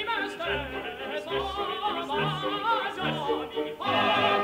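Operatic male voices singing with vibrato over an orchestra, from a tenor–baritone opera duet. The orchestra swells louder near the end.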